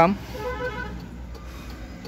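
A brief, faint vehicle horn toot about half a second in, over a steady low rumble.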